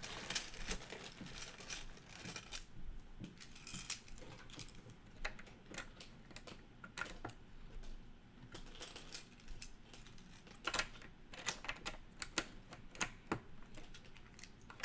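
LEGO bricks clicking and clattering as pieces are handled, sorted and pressed onto baseplates: irregular clusters of small sharp plastic clicks, busiest near the start and again near the end.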